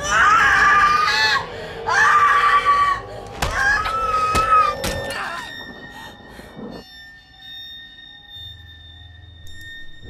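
A woman screaming three times, long high cries, with a few sharp knocks around the third scream. Then a steady high-pitched drone from the horror sound design holds to the end.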